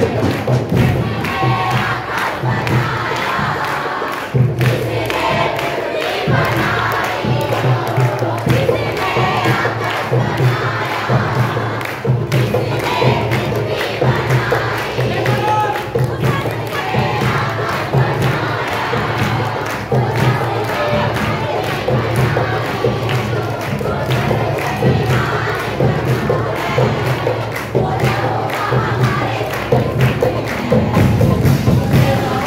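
A congregation's many voices raised at once in loud, fervent worship, singing and calling out together. Hand-clapping runs through it over a steady thudding beat.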